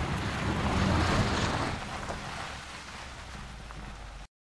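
Mercedes-Benz E-Class All-Terrain wagon driving on a dirt track: a hiss of tyres on loose sand and gravel over a low engine hum. It swells about a second in, then fades as the car pulls away.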